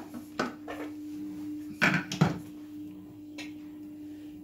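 Plastic lid of a Thermomix TM6 mixing bowl being set on and clicked into place: a few sharp knocks, the loudest two close together about two seconds in, over a steady low hum.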